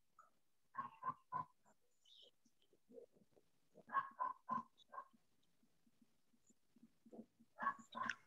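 A dog barking faintly in short bunches of three to five barks, heard over a video call's open microphone.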